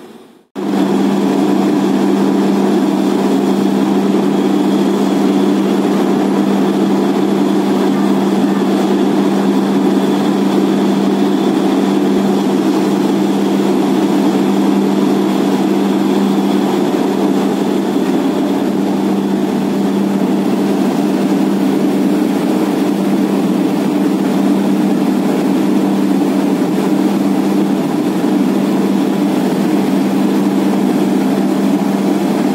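Borewell drilling rig's heavy diesel engine running steadily with a constant low hum, cutting in suddenly about half a second in.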